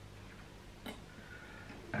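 Quiet room tone with a faint steady hum, broken by one short click a little under a second in.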